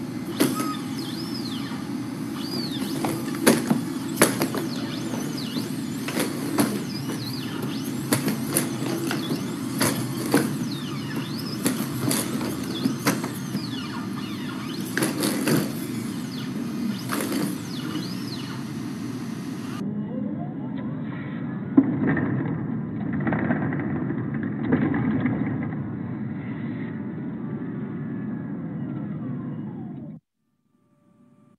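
Boston Dynamics Atlas humanoid robot moving about: the steady whir of its hydraulic pump, with sharp knocks of its feet on the floor and a few squeaks early on. It is heard through video-call audio that turns duller about two-thirds of the way through.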